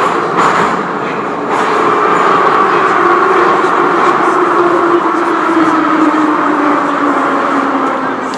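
Metro train running, heard from inside the carriage: a loud rumble of wheels and motors with a whine that slides slowly lower in pitch. It grows louder about one and a half seconds in.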